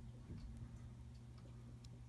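A few faint, scattered small clicks from a vintage Seiko 6139 chronograph as its crown and date quickset pusher are worked by thumb; the set pusher is stiff and won't push in. A low steady hum runs underneath.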